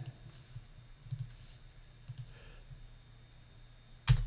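A few faint clicks of a computer mouse, scattered through the first half, over a low steady hum.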